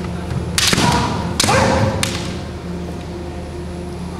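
A fast kendo exchange: sharp cracks of bamboo shinai strikes and heavy stamps of bare-foot footwork on the wooden floor, packed between about half a second and two seconds in, with a short shout among them.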